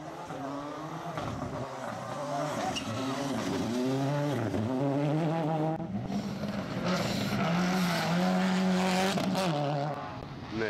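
Rally car engines at full throttle on a dirt stage. A car approaches with its engine revving, dipping in pitch at each lift and gear change. After a break, another car passes close by, its engine note stepping up through the gears, with tyres scrabbling on the loose dirt.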